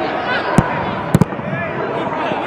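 A football being kicked: one sharp thump about half a second in and two quick ones just after a second, heard over players shouting to each other on the pitch.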